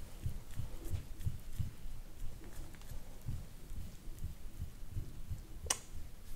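Metal massage scraper being stroked over the skin of a back, heard as an irregular series of soft low thuds with a faint scratchy rubbing. A brief sharp noise comes just before the end.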